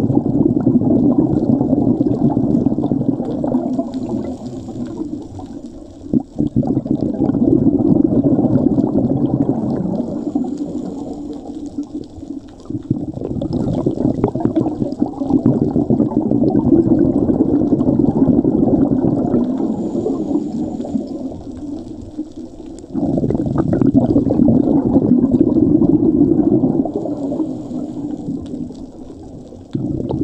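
Scuba diver breathing through a regulator, heard underwater: long rushes of exhaled bubbles that swell and fade every several seconds, with a fainter hiss between them.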